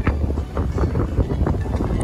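Rough surf breaking on a rocky shoreline, under strong wind buffeting the microphone with a steady low rumble.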